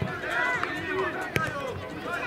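Overlapping high shouts and calls of young footballers and onlookers during play, with one sharp knock of the football being kicked about one and a half seconds in.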